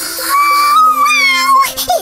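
A high, drawn-out, cartoonish vocal sound, held for about a second and a half, over background music.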